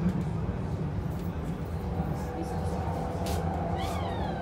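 Inside a Transilien line H electric commuter train running at speed: a steady low rumble of the wheels on the track, joined about halfway by a steady humming tone, with a few sharp clicks. A brief high squeal rises near the end.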